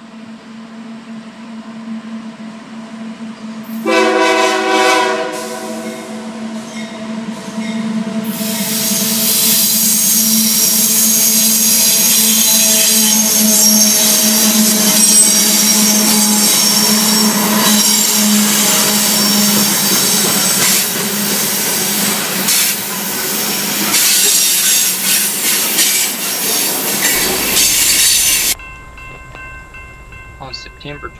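Diesel freight locomotives drone as they approach, and the lead unit sounds its horn once for about four seconds. From about eight seconds in, the train passes close by with loud, high wheel squeal and rolling noise from the wheels, which cuts off suddenly near the end.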